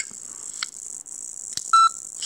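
A single short electronic beep from a mobile phone, about a quarter second long near the end, preceded by a couple of faint clicks.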